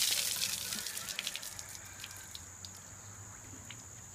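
Ice water streaming and dripping off a drenched person just after a bucketful has been poured over his head, the splash dying away in the first second into scattered drips.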